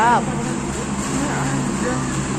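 A person's voice calls out briefly at the very start, rising then falling in pitch, over a steady low hum and general background noise.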